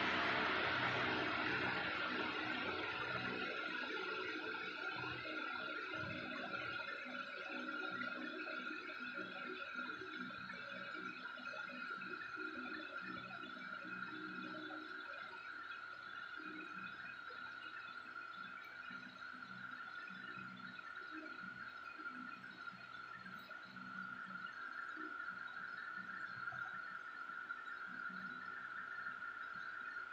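Indoor swimming pool ambience: a steady high-pitched hum over faint, irregular water lapping and splashing. A hiss at the start fades away over the first few seconds.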